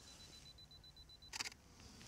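Canon R5 camera shutter firing once, a short sharp click about one and a half seconds in. Before it comes a faint, steady, high-pitched whine that stops at the click.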